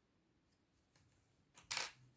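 Knitting needles handled: a single short clatter about one and a half seconds in, otherwise very quiet.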